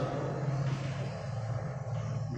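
A steady low hum, with the scratch of chalk writing on a chalkboard.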